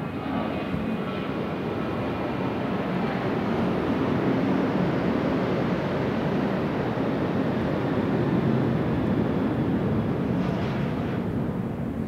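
A jet aircraft passing, a steady roar that builds, holds through the middle and eases off toward the end.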